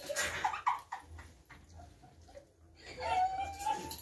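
High-pitched giggling from women and girls: short yelps about half a second in, then one drawn-out squealing note near the end.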